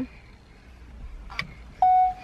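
A faint click, then near the end a single loud electronic beep, one steady tone held for over half a second.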